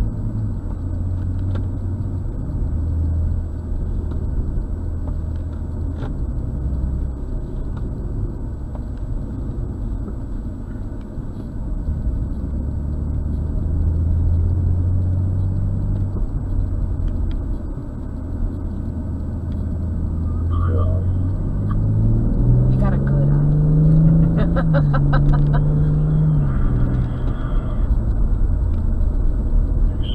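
BMW M240i's turbocharged inline-six heard from inside the cabin over tyre and road rumble, running at a steady cruise, then rising in pitch as the car accelerates about two-thirds of the way through, holding, and falling back near the end.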